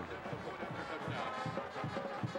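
Music playing in a football stadium, with indistinct voices under it and a few held notes, heard through a TV game broadcast.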